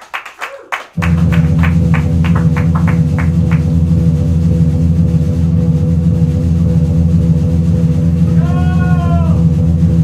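Live instrumental rock of electric guitar and drums: a few sparse hits, then about a second in a loud, low, sustained guitar drone starts suddenly and holds steady. Quick evenly spaced ticks run over its first few seconds, and a note bends up and back down near the end.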